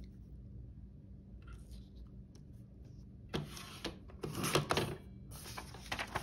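Sliding paper trimmer cutting a vellum sheet: quiet at first, then two short scraping passes of the blade through the paper in the second half, with paper rustling as the sheet is handled.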